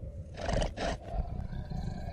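Dinosaur sound effect for an animated velociraptor: two short harsh calls close together about half a second in, over a low rumble.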